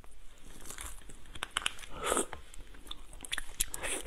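Shell of a large soy-marinated shrimp cracking and crackling as it is pulled apart by hand, with wet squelches. A louder crunch comes near the end as the shrimp is bitten.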